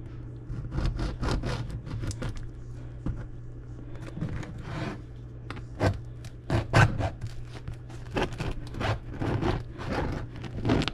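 A long kitchen knife sawing through the crust of a round loaf in quick scraping strokes, then the crust crackling and tearing as the loaf is pulled apart by hand. A steady low hum runs underneath.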